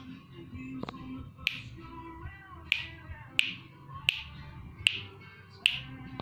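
Six sharp hand claps, roughly one every three-quarters of a second, over a song playing faintly from a television.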